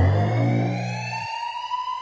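Electronic transition sting: a slowly rising synth tone over a deep bass hit that rings on and stops a little past a second in. The rising tone fades toward the end.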